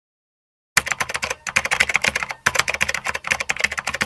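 Rapid computer-keyboard typing, about a dozen keystrokes a second in three runs with brief pauses, starting under a second in. It accompanies the on-screen text card as a typing sound effect.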